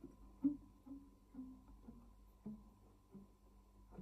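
Nylon-string classical guitar played softly: a slow line of single plucked notes, about seven in the four seconds, the earlier ones ringing into each other and the later ones more spaced out.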